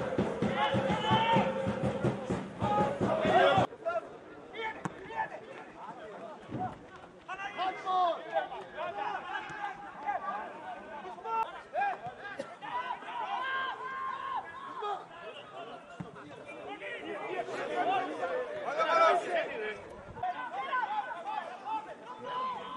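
Music that cuts off abruptly about three and a half seconds in, followed by quieter football-match sound: people's voices calling and chattering, with a few short knocks.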